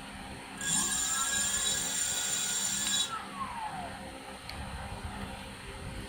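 18-inch 1000 W brushless rear hub motor spun up on the throttle with no load: a high electric whine with a rising tone, held for about two and a half seconds. The whine then cuts off and the tone glides down as the motor coasts to a stop.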